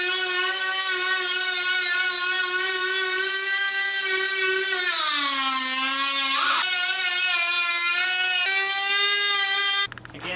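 Handheld air tool running with a loud, steady high whine. About halfway through, its pitch sags as it bites into the front fender's sheet metal, then jumps back up a second and a half later as the load comes off.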